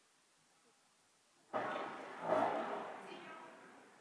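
Indistinct voices in a large, echoing hall. They start suddenly about a second and a half in and fade out over the next two seconds.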